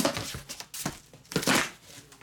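Plastic wrapping crinkling and tearing in short bursts as it is handled, the loudest burst about one and a half seconds in.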